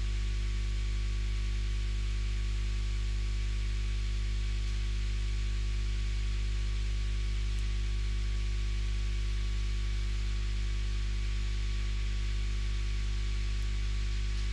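A steady low electrical hum with a faint even hiss, unchanging throughout.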